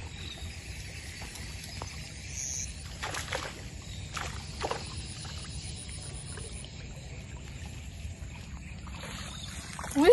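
Light splashing on the water surface as a small hooked snakehead is reeled in across a weedy swamp, with a few brief swishes about three to five seconds in, over a steady low rumble.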